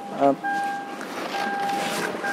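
Toyota Land Cruiser Prado's warning chime beeping steadily, about once a second, three times, while the driver's door stands open.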